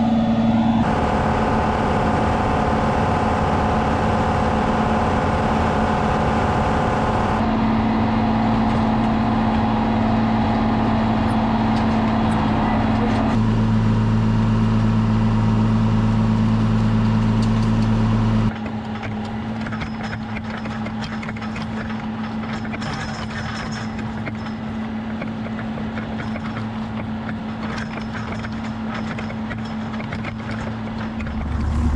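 John Deere 7810 tractor's six-cylinder diesel engine running steadily under load while pulling a five-bottom moldboard plow through the soil. The tone changes abruptly several times, about a second in, about a quarter and nearly halfway through, and it is quieter over the last third.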